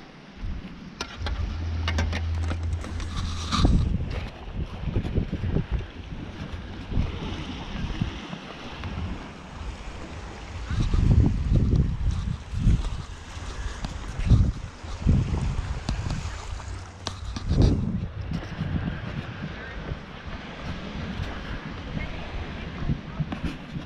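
Wind buffeting the microphone in uneven low gusts, with a faint wash of surf behind.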